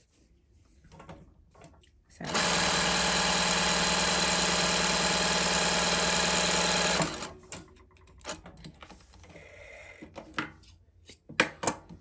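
Reliable 2300SZ industrial zigzag sewing machine running steadily for about five seconds as it sews a zigzag stitch, then stopping abruptly. Quieter handling noise and a few sharp clicks follow near the end.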